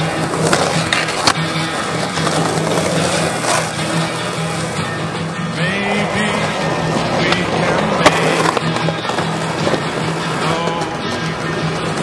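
Skateboard wheels rolling on concrete with several sharp clacks of board pops and landings, the loudest about eight seconds in, heard over a song playing throughout.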